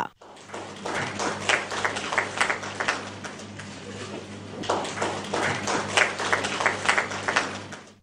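A small group clapping by hand in applause, swelling twice, over a steady low hum.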